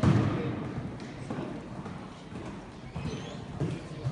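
Horse's hoofbeats thudding irregularly on soft sand arena footing as it canters a jumping course, with a louder thump at the very start.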